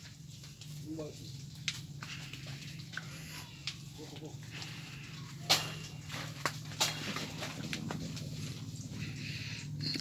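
Footsteps along a dirt path through a banana grove, with scattered sharp snaps and clicks of twigs and dry leaves, the loudest about five and a half and seven seconds in, over a steady low hum. Faint distant calls come about a second in and again around four seconds.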